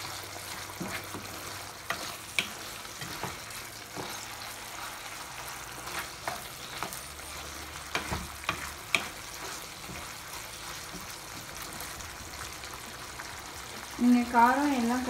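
Chicken pieces in a thick masala sizzling in a non-stick wok, stirred with a spatula that scrapes and clicks against the pan. The clicks come mostly in the first nine seconds, over a steady frying hiss.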